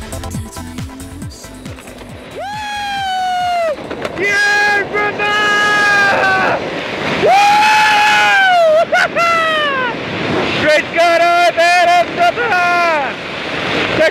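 A person's high-pitched voice calling out in long drawn-out whoops and shouts over rushing wind noise. Electronic dance music fades out in the first two seconds.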